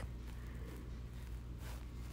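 Quiet room tone with a steady low hum, and a brief faint rustle near the end.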